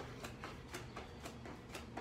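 Faint, steady ticking of evenly spaced sharp clicks, about four a second.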